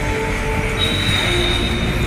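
A train running across a steel rail bridge, with a steady high-pitched wheel squeal that sets in about a second in.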